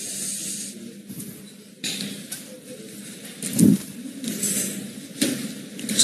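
Room noise with a steady hiss and low hum, a brief indistinct voice about halfway through, and a few light clicks.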